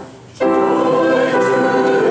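Church congregation singing a hymn together with piano accompaniment. The voices come in suddenly about half a second in, after a brief dip at the end of the piano introduction.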